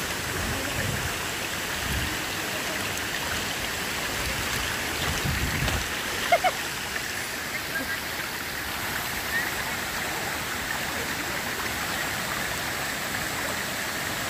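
Steady rush of running water, with two short knocks about six and a half seconds in.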